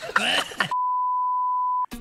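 A censor bleep: one steady, high-pitched beep lasting about a second, with all other sound cut out behind it, masking a word right after a brief stretch of speech at the start.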